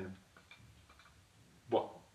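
A man's voice speaking one word, then pausing for about a second and a half before speaking again near the end. A few faint small clicks fall in the pause.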